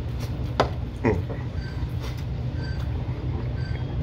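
A person chewing a mouthful of burrito, with a few wet mouth clicks and a short "mm" about a second in, over a steady low hum of background machinery.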